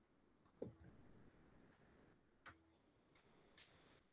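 Near silence with a few faint computer mouse clicks, the clearest about half a second in.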